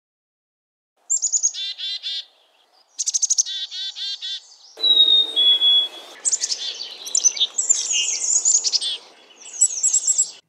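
Black-capped chickadees giving their chick-a-dee-dee-dee call several times, with a clear two-note whistled fee-bee song, the second note lower, about five seconds in.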